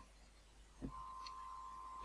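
Very quiet room tone. A brief soft sound comes just under a second in, then a faint steady high-pitched tone holds.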